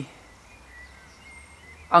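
Quiet outdoor background noise between words, with a faint low rumble and a faint thin high tone in the middle.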